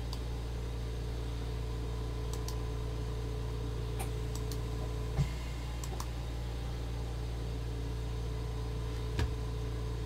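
Steady low electrical hum with a few faint, scattered clicks from a computer being worked, and two soft thumps, one about halfway and one near the end.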